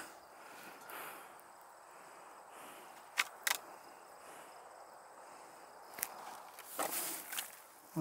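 Quiet outdoor ambience with a few sharp clicks, two about three seconds in and one at six seconds, and a brief rustle near the end, from junk being handled in a pile.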